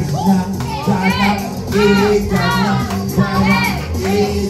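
Loud karaoke music playing, with a man singing into a microphone over the backing track.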